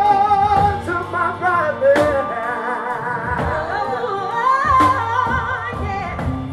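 Live soul band playing with a woman and a man singing, their voices running in wavering, ornamented lines over guitar, keys and drums. The bass drops away for a couple of seconds in the middle, with drum hits about two seconds in and near the five-second mark.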